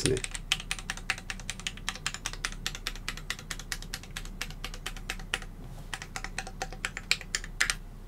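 Typing on a Keychron Q1 75% mechanical keyboard with an aluminium case and Gateron Phantom Brown switches: fast runs of key clicks. They thin out for about a second a little past halfway, then pick up again.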